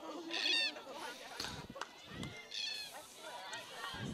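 Distant high-pitched shouts from players on a field hockey pitch: one short call about half a second in and another a little after the middle, with a few faint knocks in between.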